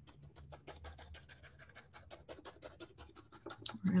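A paintbrush pounced rapidly and steadily onto Mod Podge-covered napkin on a wooden birdhouse cutout, about nine or ten soft dabs a second, pressing the napkin down into the crackle texture.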